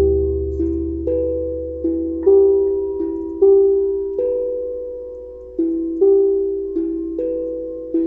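Steel tongue drum played slowly, single struck notes about one a second in a simple melody, each ringing on and fading under the next, with a low drum tone dying away over the first second or two.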